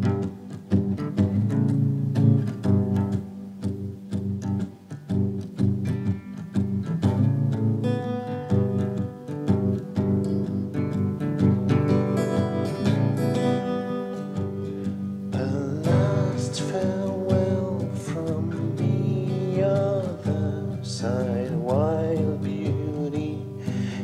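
Live acoustic guitar played in a steady rhythm of plucked low notes. About two-thirds of the way through, a man's voice joins in with wordless singing over the guitar.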